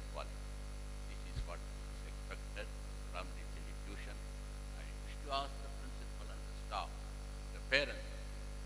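Steady electrical mains hum on the recording, with a soft thump about a second and a half in and a few brief, scattered voice sounds later on.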